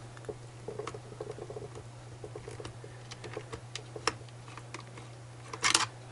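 Small PH1 Phillips screwdriver turning out a laptop screen-bezel screw: faint, irregular clicks and light scrapes of the metal tip in the screw head, with one sharper click about four seconds in. A low steady hum runs underneath.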